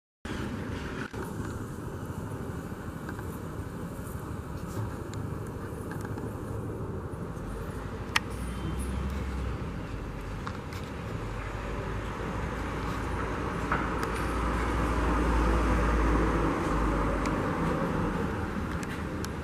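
Steady city road-traffic noise, swelling near the end as a vehicle passes closer. A single sharp click about eight seconds in.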